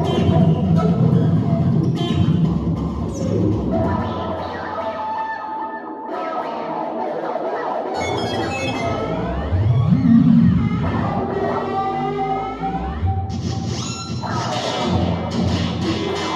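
Free, abstract improvised electric guitar played through an amplifier: a dense, shifting wash of sustained notes and noise. About eight to ten seconds in a low pitch sweeps upward, followed by several sliding pitches.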